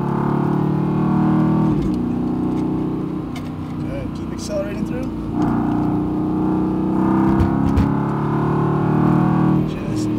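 Mercedes-AMG GT R's twin-turbo 4.0-litre V8 heard from inside the cabin, running under load for the first couple of seconds and then easing off for a few seconds. About five seconds in it comes back on hard under full acceleration, and it cuts off suddenly just before the end as the throttle is lifted.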